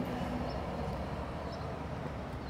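Steady low road-traffic rumble, with a passing truck's engine hum that fades out about half a second in.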